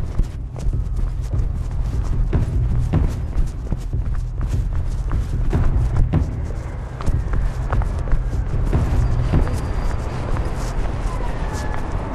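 Quick footsteps on stone pavement, irregular thuds, under a steady low rumble of wind and handling on the microphone of a camera carried at a fast walk.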